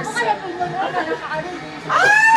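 Several people talking at once: indistinct chatter.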